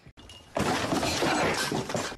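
A shattering crash of something breaking, starting about half a second in and lasting about a second and a half.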